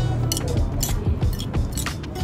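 Background music, with several light clinks of a metal spoon and fork against a ceramic plate as food is stirred and mixed.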